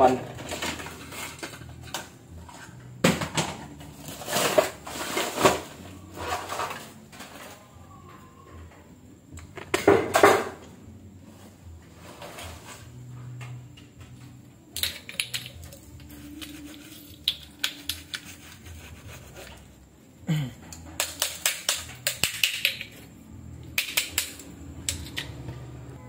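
Irregular clatter and knocking of hard plastic and metal items as a pile of old electronics (power adapters, cords and lamps) is rummaged through, coming in spells of rapid clicks with short pauses between.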